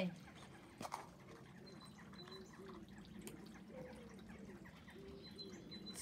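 A light click about a second in as a plastic Easter egg is pulled open, over a quiet garden background with faint low bird calls.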